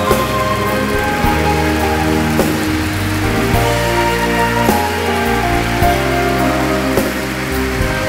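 Live band playing an instrumental interlude of held chords over a bass line that steps between notes, with an even wash of audience applause over the music.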